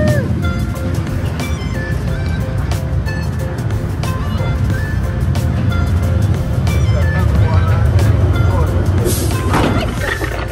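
A dark ride's spooky soundtrack of music and effects plays over the steady low rumble of the ride car running along its track, with a short hiss near the end.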